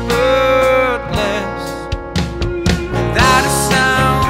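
Recorded song: a young male voice singing over acoustic guitar accompaniment.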